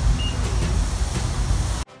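Steady outdoor background noise with a heavy low rumble, the kind a phone microphone picks up in a parking lot. It cuts off abruptly just before the end.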